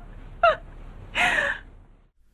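A woman's voice: a short voiced catch of breath about half a second in, then a longer breathy gasp a little after a second in.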